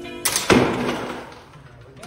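A small wooden truss bridge snaps under its load and the hanging bucket drops. A sharp crack comes about a quarter-second in, then a louder crash that rings away over about a second. Guitar music cuts off at the crack.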